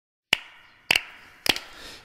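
Three sharp wooden clicks about 0.6 s apart: a percussion count-in setting the song's tempo, with the band coming in on the next beat.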